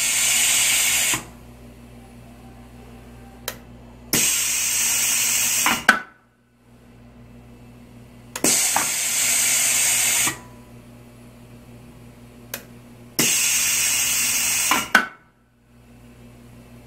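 Pneumatic vacuum gate valve being cycled through its 24 V DC solenoid valve: four bursts of compressed-air hiss, each about two seconds long, as the air cylinder strokes the gate. The second and fourth strokes end in a sharp knock, and a single click falls between strokes.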